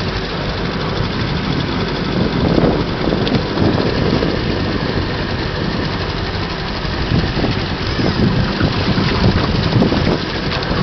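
An 18 hp two-stroke outboard motor running steadily, pushing a small boat along.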